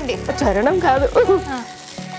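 Women talking in Telugu-accented speech, with a quieter, steady held tone near the end.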